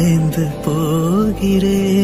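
Background music: a slow, wavering melody line over a steady low bass.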